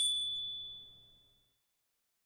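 A single high, bright ding, a chime sound effect, struck once and fading away over about a second and a half; it marks the answer key being shown.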